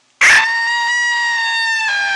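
A long, high-pitched scream that starts suddenly a fifth of a second in and holds one steady pitch.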